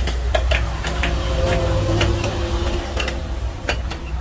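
Scattered sharp metal clicks and taps of pipe wrenches being fitted and shifted on the steel casing of a submersible pump, over a steady low hum.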